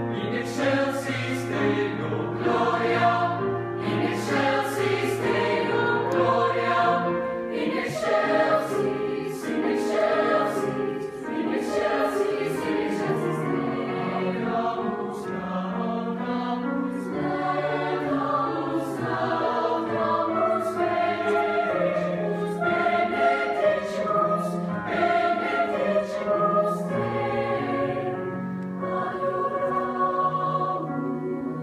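Large mixed choir of teenage voices singing in sustained harmony, the chords shifting from note to note throughout.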